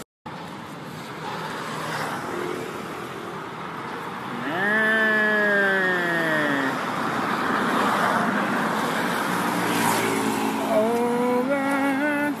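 Road traffic with vehicle engines running. Near the end an engine speeds up in steps. About four seconds in there is a single long call that falls in pitch over about two seconds.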